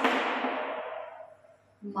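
Chalk on a chalkboard as words are written: a sharp knock as the chalk strikes the board right at the start, then scraping strokes that fade away over about a second and a half.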